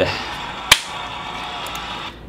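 A steady wash of sound from the dance competition video playing back, broken once, about a third of the way in, by a single sharp crack that is the loudest sound.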